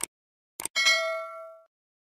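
Subscribe-button sound effect: a mouse click, then about half a second later two quick clicks and a bright bell ding that rings for about a second and fades, the notification-bell chime.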